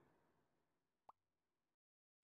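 Near silence, broken only by one very faint, brief rising blip about a second in.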